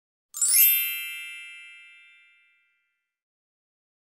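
A single bright chime sound effect for a title card: a sparkly shimmer at the start, then several ringing tones that fade away over about two seconds.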